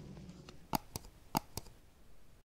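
Four short, sharp clicks in two pairs over a faint hiss.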